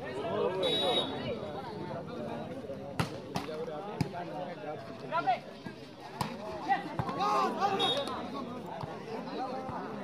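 Voices of players and onlookers talking and calling out around an outdoor volleyball court, with a few sharp smacks of the volleyball being struck during a rally.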